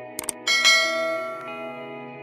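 Two quick mouse-click sound effects, then a bright notification bell chime that rings out and fades over about a second: the subscribe-and-bell sound effect, over background music.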